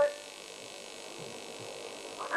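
A long sung note cuts off right at the start. After it comes a pause of steady electrical hum and hiss from an old recording's sound system.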